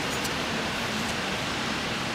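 Steady, even background noise of an outdoor city setting, most likely distant street traffic.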